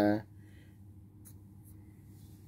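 A man's drawn-out word ends just after the start, then quiet room tone with two faint clicks.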